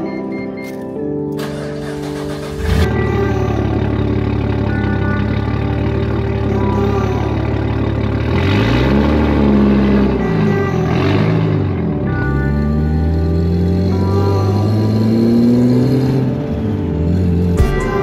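A Nissan Skyline R33's turbocharged straight-six starts with a sudden catch about three seconds in, then runs and is revved several times, its pitch rising and falling. Background music plays under it.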